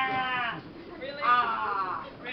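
A person's voice giving two long, high, falling cries, the second about a second after the first, in the manner of a playful vocal imitation rather than words.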